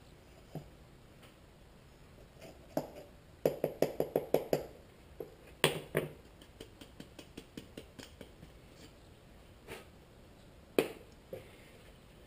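Metal measuring cup tapped quickly against the rim of a small metal paint can, about eight light taps in a second, to knock the last powder out. This is followed by a couple of sharp single clinks of metal utensils handled and set down, one about halfway and one near the end.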